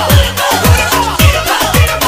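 Electronic dance music with a steady four-on-the-floor kick drum, about two beats a second, under hi-hats and synth lines.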